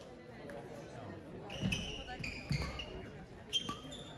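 Court shoes squeaking and footfalls thumping on an indoor sports hall floor, a few times from about halfway in, with voices in the hall behind.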